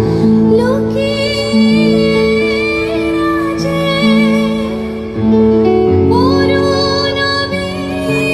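A woman singing a melody live into a microphone over a band's sustained keyboard chords, heard loud through the stage speakers.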